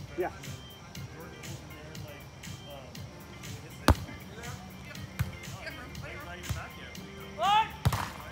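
A volleyball struck hard by hand, one sharp loud smack about four seconds in, then another hit near the end as the ball is played at the net, just after a short shout from a player.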